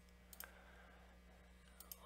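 Near silence with a faint low hum, broken by two faint computer-mouse clicks, one about half a second in and one near the end.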